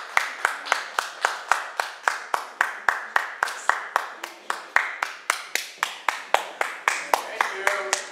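Hand clapping from a small audience, led by one close clapper's sharp, even claps at about five a second, which stop at the end.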